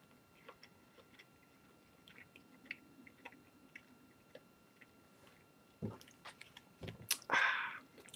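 A person chewing beef jerky with the mouth closed: faint, scattered wet mouth clicks, with a few louder sounds near the end.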